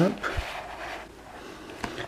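A hardcover album book being slid out of its cardboard slipcase: a brief papery rub and a soft thump just after the start, then quiet handling with a small click near the end.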